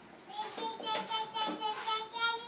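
A toddler babbling and vocalizing in a high voice, a run of short sing-song syllables.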